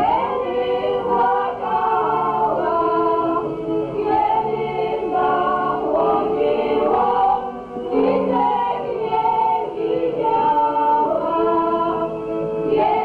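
A mixed group of men's and women's voices singing a Podhale highlander (góral) folk song together, in long held notes, with a brief break between phrases about two-thirds of the way through.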